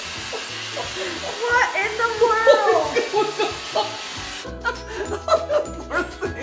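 People's voices exclaiming over the hum of a robot vacuum carrying a puppy. Background music follows a sudden change about four and a half seconds in.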